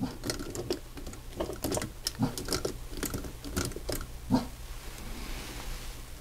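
Voltron 30th Anniversary figure's waist joint being twisted back and forth by hand: a run of small, irregular clicks and knocks from the joint and the fingers on the figure, with very little movement in the joint.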